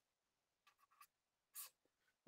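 Faint scratching of a pen writing on paper, a few short strokes with a slightly louder one a little after halfway.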